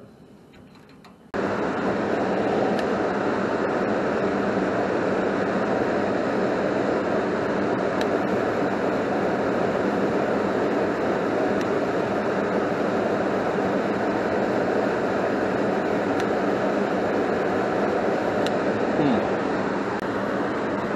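Goodman 80% gas furnace running with its X13 blower motor energized: a steady rush of moving air over a low motor hum, which comes in suddenly about a second in and holds even. The blower is drawing a little over two amps on its tap-two speed.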